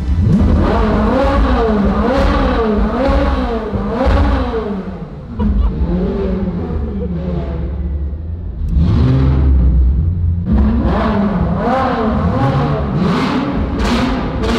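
Ferrari 458 Spider's naturally aspirated V8 revved again and again at low speed, its pitch rising and falling with each blip of the throttle, with a lull in the middle.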